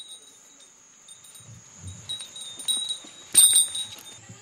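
High metallic chimes ringing, struck several times with the loudest strike about three and a half seconds in, over a faint steady high whine.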